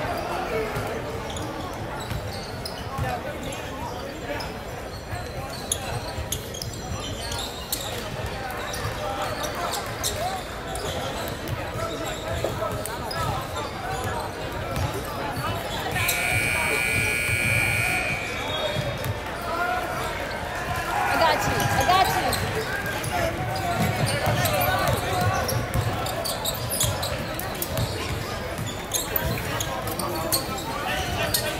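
Basketball game sounds in a gym: players' and spectators' voices, a ball bouncing on the hardwood, and shoes on the court. About halfway through comes a harsh steady buzzer tone lasting about two seconds.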